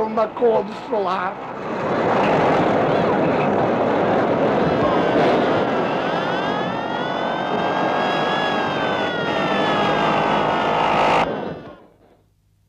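Cartoon soundtrack: a brief shouted line of voice, then a loud continuous roaring din of sound effects with a pitched tone that rises and falls in the middle, cut off suddenly near the end.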